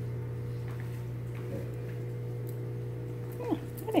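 A steady low hum with a few faint, steady higher tones over it, ending in a short gliding sound near the end.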